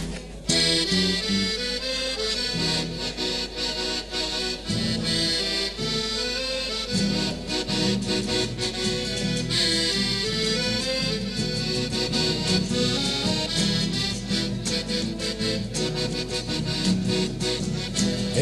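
A piano accordion and two acoustic guitars playing the instrumental introduction to a Chilean song, coming in about half a second in. The accordion carries the held melody notes over strummed guitar chords.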